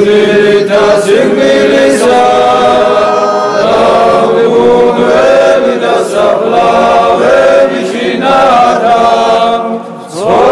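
A church choir chanting a Georgian Orthodox hymn in several voices, holding long notes and sliding up into each new phrase.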